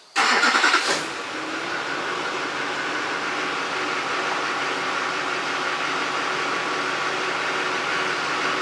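Pickup truck engine cranking briefly, catching about a second in, and settling into a steady idle.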